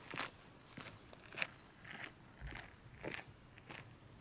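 Footsteps crunching on a gravel path at a steady walking pace, about seven steps in four seconds.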